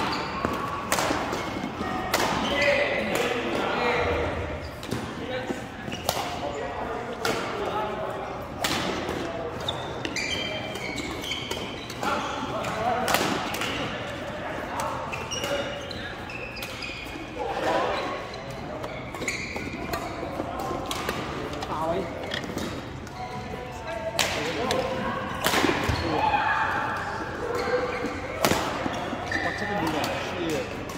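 Badminton rackets striking a shuttlecock during doubles rallies: sharp hits at irregular intervals.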